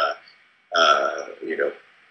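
A man's voice making a drawn-out, wordless 'uhh' of hesitation, about a second long, with short silences on either side.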